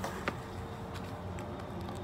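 A few faint clicks from the plastic valve and connector parts as the drysuit around them is handled, over a steady low room hum.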